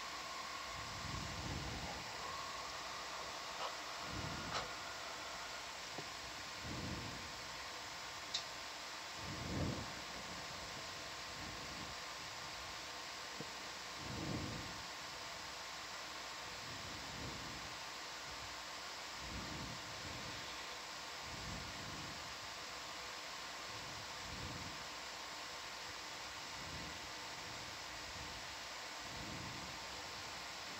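Steady hiss of an open intercom audio line with a faint hum, broken by soft low rumbles every two to three seconds.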